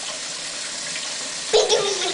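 Kitchen tap running steadily into a stainless steel sink while a toddler rinses his hands under the stream. A voice starts over the water about one and a half seconds in.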